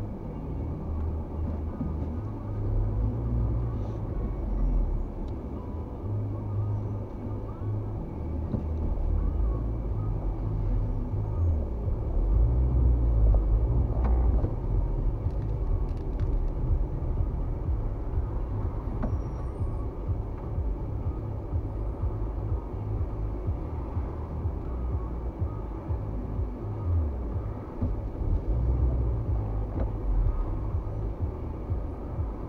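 Low, continuous engine and road rumble of a car heard from inside the cabin, rising and falling a little as it creeps along in stop-and-go traffic.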